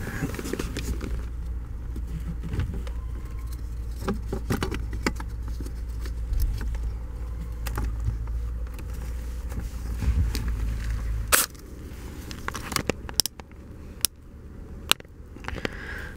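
Knocks, scrapes and sharp clicks of hands and a wooden wedge being worked into a car's steering column, over a low rumble that stops abruptly about eleven seconds in.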